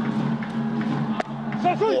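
Baseball stadium crowd with cheering and music running as a steady drone, and a single sharp pop a little over a second in: the pitch smacking into the catcher's mitt as the batter swings and misses for strike three.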